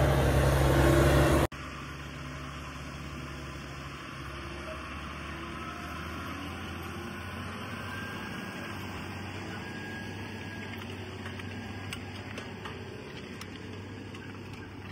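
Case IH Quadtrac tracked tractor's engine running steadily under load, pulling a cultivator through heavy ground, loud with a deep even hum. About a second and a half in the sound cuts off abruptly and gives way to a quieter, even rumble of the tractor at work.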